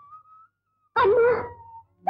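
A woman's short, wavering crying sob about a second in. Before it, a faint held high note rises slightly and fades out.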